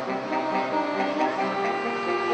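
Saxophone quartet playing live, several saxophone parts sounding together in harmony with notes changing several times a second.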